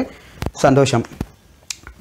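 Three sharp clicks from a man's hands, about half a second in, just after a second, and near the end, around a single short spoken word in an otherwise quiet pause.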